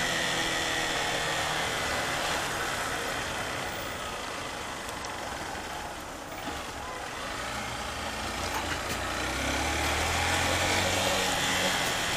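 Motorcycle engine running under the rider, heard through wind and road noise as it moves through slow city traffic; it eases off and quietens around the middle, then pulls harder and louder again toward the end.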